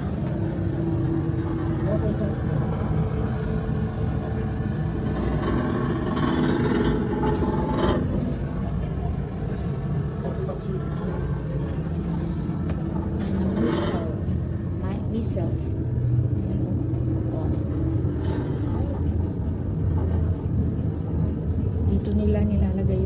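Indistinct voices of people talking in an enclosed space over a steady low rumble, with a couple of sharp knocks partway through.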